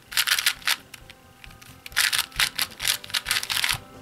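2x2 puzzle cube being turned rapidly by hand, its plastic layers clicking in fast runs: a short run of turns, a pause of about a second, then a longer run that stops just before the end.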